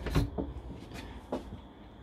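A wood-veneer wardrobe door in a motorhome being pushed shut, giving a sharp knock and click just after the start and a lighter knock soon after, then a faint click about two-thirds of the way through.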